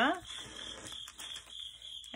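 Soft rustling of plastic pocket-letter sleeves being handled, over a faint steady high-pitched whine.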